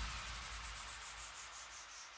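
Fading white-noise sweep, a synthesized transition effect in an electronic dance mix, with a fast flutter in its top end and a low bass rumble underneath. It dies away steadily, and the next track's synth chords come in just after.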